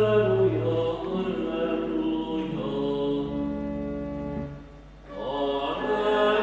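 Pipe organ playing slow, held chords over low pedal notes. The chord and bass change a few times, the sound drops to a brief lull about four and a half seconds in, then swells again.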